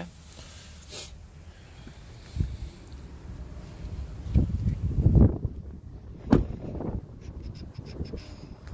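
Rustling, handling noise and dull thumps as a person climbs out of an SUV's back seat and walks to the rear of the vehicle, with a single sharp knock a little past six seconds in.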